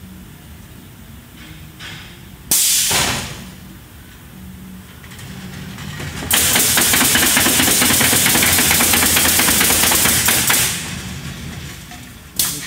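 Automated fence bridge nailer running: a short blast of compressed air about two and a half seconds in, then from about six seconds a four-second run of pneumatic nail guns firing in rapid succession with air hiss as the gantry travels over the boards, all over a low steady machine hum.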